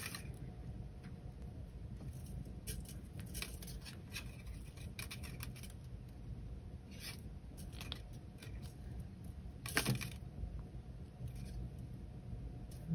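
Thin 26-gauge weaving wire being pulled through and wrapped by hand around a bundle of base wires: faint, scattered scratches and ticks of wire rubbing on wire, with one louder scrape about ten seconds in, over a low steady hum.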